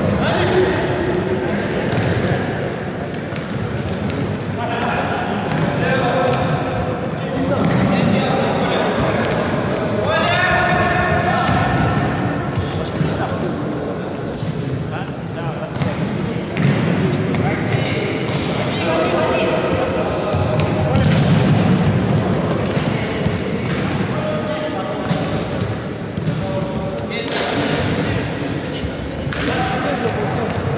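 Futsal ball being kicked and bouncing on a wooden sports-hall floor, with players' indistinct shouts and calls carrying through the hall at several points.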